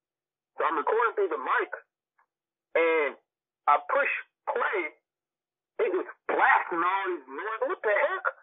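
Speech only: a voice talking in short phrases with dead silence between them, thin-sounding and cut off above the upper midrange like a call line.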